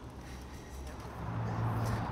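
Street ambience with a low, steady hum of road traffic that grows stronger about a second in.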